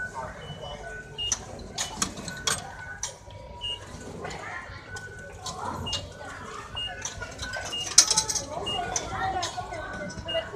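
Station concourse ambience: indistinct background chatter of voices, with short high electronic beeps recurring every second or so and several sharp clicks, the loudest about eight seconds in.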